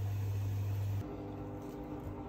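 A steady low mechanical hum that switches abruptly about a second in to a quieter, higher-pitched steady hum.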